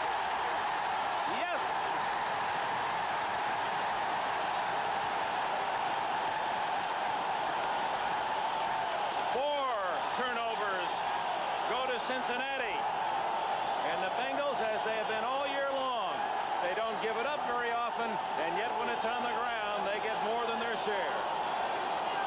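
Steady roar of a football stadium crowd after a fumble. From about ten seconds in, a man's voice talks over it, half buried in the noise.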